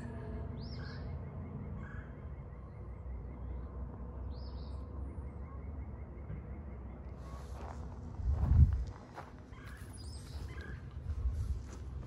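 Outdoor ambience with a steady low wind rumble on the microphone and a few short, faint bird chirps, then a loud low bump of wind buffeting or handling about eight and a half seconds in.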